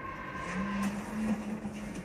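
Car engine note under acceleration, a steady pitch that holds and then steps up twice, as from a sports car pulling through the gears, heard on a TV commercial's soundtrack through the television's speaker.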